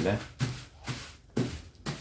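Clear plastic freezer bag crinkling under hands pressing it flat to push the air out, with a couple of sharp crackles, the last one near the end.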